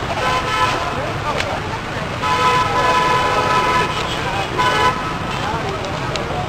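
Vehicle horns honking in street traffic: a short honk, then a long one lasting about a second and a half, then a brief toot near the end, over the steady noise of passing traffic.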